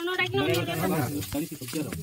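Women talking to one another, with a light, dry hissing rustle as papery insect nest comb is broken apart by hand.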